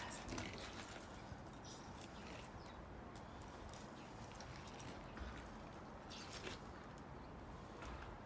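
Faint, irregular clicks and scuffs of boot steps on an icy driveway and hands handling a snowmobile before a cold start; its engine is not yet running.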